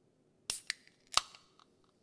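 Aluminium Red Bull can being opened by its ring-pull: a click as the tab is lifted, then, a little after a second in, a louder crack with a brief fizz as the seal breaks.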